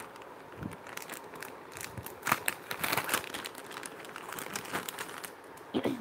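Clear plastic jewellery pouches crinkling as they are handled, in irregular bursts of crackles, loudest about two seconds in.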